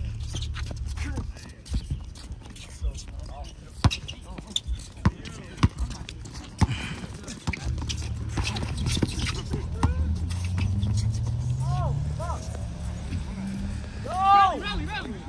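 Basketball bouncing on an outdoor asphalt court, with sharp separate thuds, among players' voices. A steady low rumble runs underneath, and a few short high squeaks or calls come near the end.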